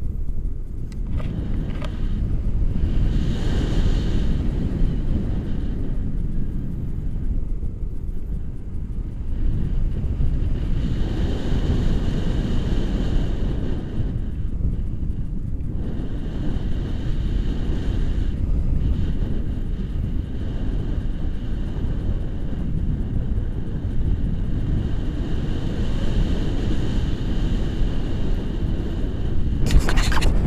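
Wind rushing and buffeting over an action camera's microphone in paragliding flight, a steady low rumble that swells and eases every few seconds.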